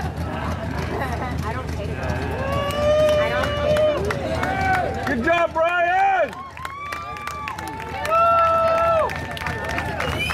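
A voice calling out in long, drawn-out words, with several held, gliding vowels, over a steady low background rumble and crowd murmur.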